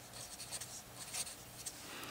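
Felt-tip marker writing on paper: faint scratching strokes as a short formula is written out.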